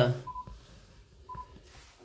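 Two short, single-pitch electronic beeps about a second apart from an amateur radio transceiver during a D-STAR picture transfer, against a quiet background.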